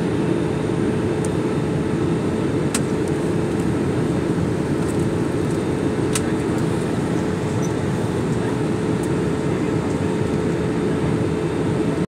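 Steady cabin noise of a jet airliner in flight heard at a window seat: engine and airflow noise with a steady hum running through it. Two faint clicks come about three and six seconds in.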